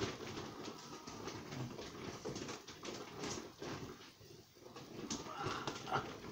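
Irregular soft rustling and light knocks of a fallen book being picked up off the floor and handled.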